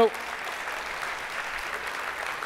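Congregation applauding: steady, even clapping from many hands.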